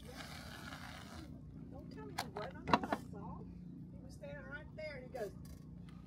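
Aerosol can of whipped cream spraying: a hiss lasting just over a second. A couple of sharp clicks follow about two and a half seconds in.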